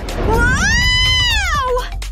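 A girl's long, high-pitched scream that rises and then falls, lasting about a second and a half, over background music.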